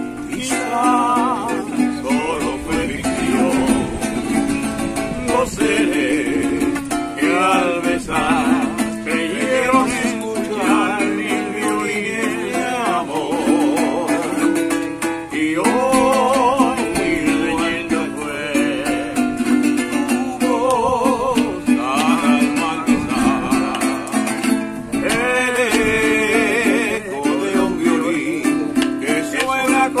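Men singing a Latin ballad together to a strummed cuatro, a small four-string guitar, with the strumming keeping a steady chordal beat under wavering vocal lines.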